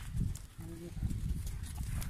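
A herd of castrated male goats milling about: scattered hoof steps and shuffling, with one brief faint bleat about half a second in, over a low outdoor rumble.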